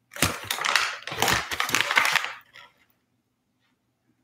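Clear plastic pouch crinkling as it is turned over in the hands: a dense run of sharp crackles lasting about two seconds that then stops.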